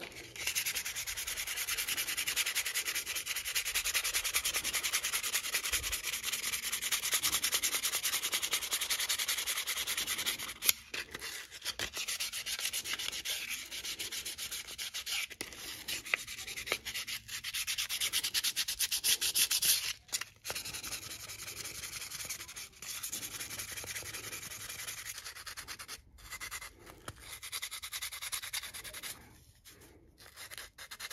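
Hand-sanding a carved mahogany knife handle with folded sandpaper, rubbed back and forth in quick, steady strokes. It pauses briefly about ten and twenty seconds in, and the strokes are lighter and quieter after the second pause.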